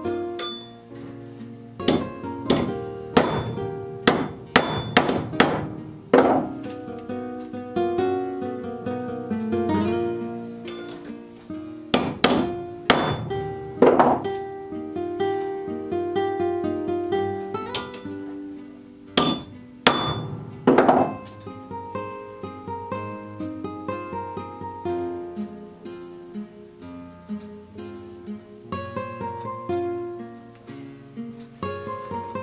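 Ball peen hammer tapping a steel auger bit extension shaft against a block of railroad iron to take a kink out. The taps are sharp and ringing and come in three bursts of several quick blows, the first and longest a couple of seconds in. Acoustic guitar background music plays throughout.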